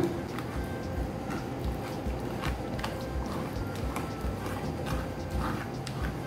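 Wooden spoon working a thin batter through a fine metal mesh sieve set over a glass bowl: a steady rhythm of soft knocks and scrapes, about two or three a second.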